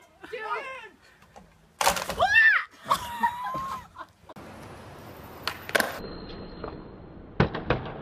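A man yells and there is a sudden crash as a tall wooden beam comes down with him onto a trampoline, with voices crying out around it.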